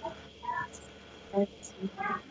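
A few brief, faint, hesitant voice syllables from a person over a video call.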